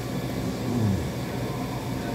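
A steady low mechanical hum, with a man's short falling 'mmm' through a mouthful a little under a second in.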